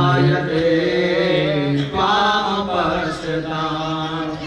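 Male priests chanting Sanskrit puja mantras in a melodic recitation on long held notes that step from pitch to pitch, with a short breath break about two seconds in.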